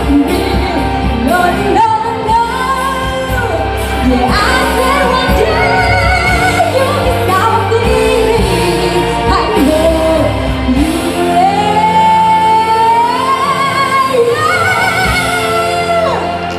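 A girl singing a pop song into a handheld microphone over a recorded backing track, amplified through PA speakers in a large hall. Near the end the bass of the backing drops out and she holds one long note that rises in pitch.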